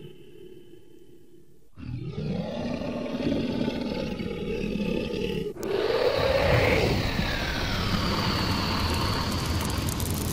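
Sound-effect dragon roars. After a fainter steady sound in the first two seconds, a long growling roar comes in. From about halfway a second, louder roar follows, with a rushing noise as the dragon breathes fire.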